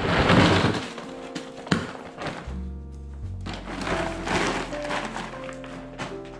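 A shopping bag of boxed and plastic-wrapped toiletries being tipped out onto carpet: a loud clattering rustle in the first second, a sharp click a moment later, and more rustling of packages about four seconds in. Background music plays underneath.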